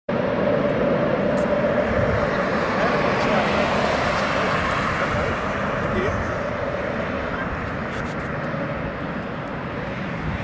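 Twin-engine jet airliner's engines running on final approach and landing: a steady rushing noise with a constant whine-like tone through it, slowly growing quieter as the plane moves away down the runway.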